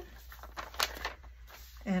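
Paper envelope rustling as it is handled and smoothed flat by hand, with a short crinkle a little before a second in.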